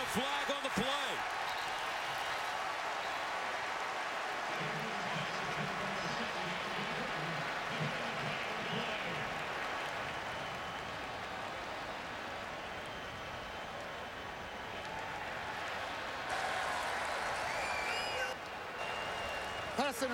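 Steady noise of a large football stadium crowd, with faint voices showing through from about five to nine seconds in.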